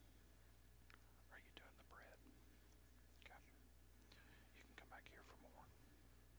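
Near silence: room tone with faint whispered speech in two short stretches, about a second in and again about three seconds in.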